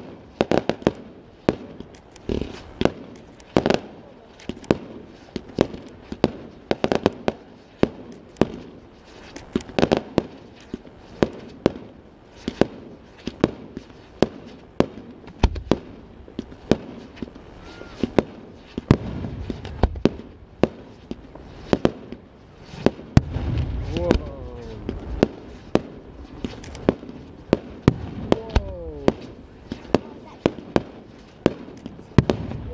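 Fireworks display: a long run of sharp bangs, about one to two a second, as shells and mines go off.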